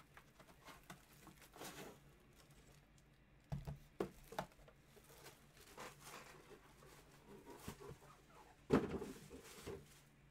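Faint rustling and scraping of a cardboard box and plastic wrap as a metal card briefcase is slid out and handled, with a few light knocks, the loudest near the end.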